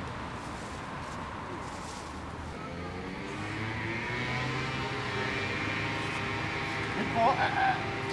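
A motor vehicle engine running steadily nearby, its hum growing louder from about three seconds in. Near the end, brief voices call out over it.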